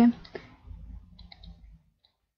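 A few faint clicks in quick succession about a second in, made while words are handwritten on a computer's digital whiteboard with a pen tool. Low room noise runs underneath and cuts out near the end.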